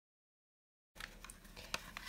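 Dead silence for about the first second, then faint room tone with a low hum and a few light clicks.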